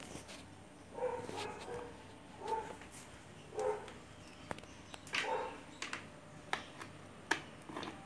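A dog whimpering in short calls, four times, with a few sharp clicks in between.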